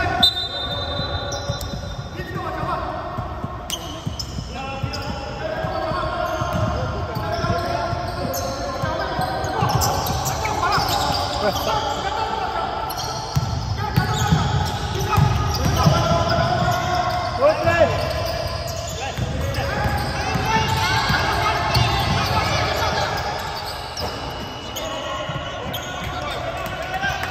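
Basketball dribbled on a hardwood gym floor, with players' shoes squeaking and their voices calling out in an echoing hall. A referee's whistle sounds briefly at the very start.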